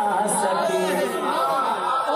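Several men's voices talking over one another, the sung recitation having just broken off.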